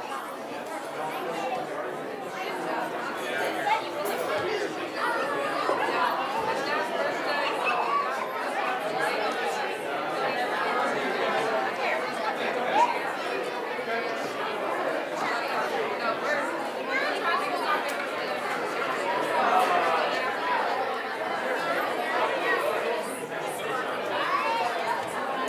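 A congregation's chatter: many people talking at once in overlapping conversations, no single voice standing out, carrying in a large room.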